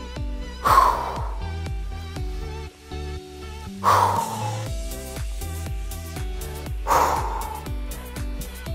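Background workout music with a steady beat, broken three times, about three seconds apart, by a short forceful exhalation as each crunch is made.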